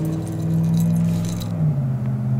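A steady low engine hum that drops slightly in pitch near the end, with light metallic clicking and jingling from a fishing reel being wound in.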